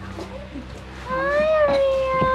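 A long-haired pet giving one long, drawn-out cry that starts about a second in, rising in pitch and then holding steady.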